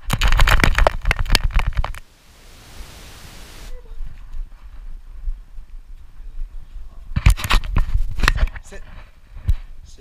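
Rubbing and knocking noise from a GoPro worn on a dog's harness as the dog moves, in two loud crackly spells with a steady hiss between them and a single click near the end.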